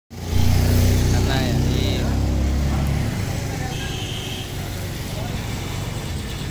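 A motor vehicle engine running close by, a low steady drone that drops back to a rougher, quieter rumble about three seconds in. Voices and a short high tone are heard briefly in the background.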